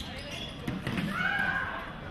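Voices in a large, echoing sports hall, one raised voice loudest about a second in, with a few sharp knocks and thuds among them.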